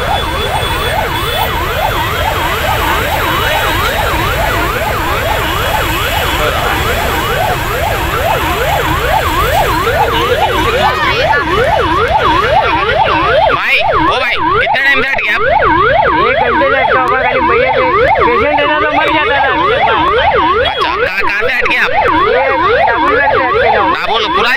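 Ambulance electronic siren on yelp, a fast rising-and-falling wail about three sweeps a second, over a low traffic rumble.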